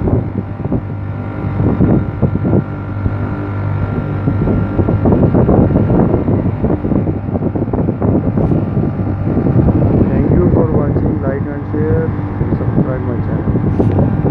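Newly fitted three-phase compressor of an air-conditioner outdoor unit running under load, a steady low hum with rough mechanical noise over it.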